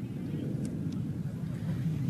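Steady low rumble of outdoor background noise on a remote live feed, with a few faint ticks.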